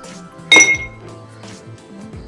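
Ice cubes dropped into an empty tall drinking glass: one sharp clink about half a second in, with a brief glassy ring.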